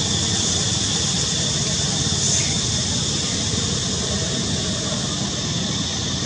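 Steady outdoor background noise with no single event standing out: a constant high hiss with a thin steady high tone, over a low rumble.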